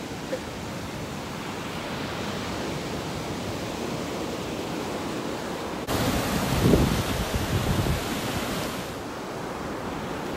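Ocean surf washing steadily onto a sandy beach, with wind on the microphone. About six seconds in it steps up suddenly and a wave breaks louder with a low rumble for a few seconds, then settles back to the steady wash.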